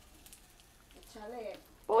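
Faint sizzling of hot oil frying egg-battered dried fish in a pan, with light crackles. A quiet voice is heard after about a second, and a loud exclamation right at the end.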